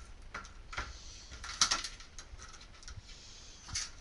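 Keys jingling and clicking against a door lock as a key is tried in it, a few separate sharp clicks with the loudest in the middle: the key is the wrong one and does not open the door.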